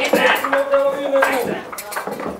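Clinking and clattering, over a voice holding one long, steady note that stops about one and a half seconds in.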